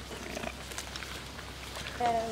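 Faint sounds of alpacas feeding at a fence, with a few soft scattered clicks and a brief faint tone about half a second in.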